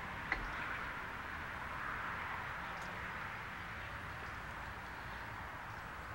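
Quiet outdoor ambience on a golf course: a steady soft hiss, with one light click just after the start.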